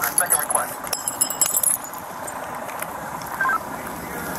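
Indistinct voices at the start, then a brief metallic jingling of small metal equipment about a second in, over a steady background noise.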